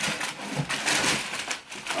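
Tissue paper crinkling and rustling as a sneaker is pulled out of its box, loudest about a second in.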